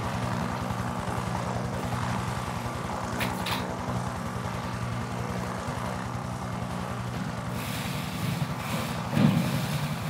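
Steady low mechanical rumble with a rapid fine pulse, like an idling engine, from a film soundtrack played over a hall's speakers. A few brief clicks come around three seconds in, and a louder thump near the end.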